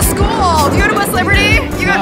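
Background pop music with a steady beat and sung vocals.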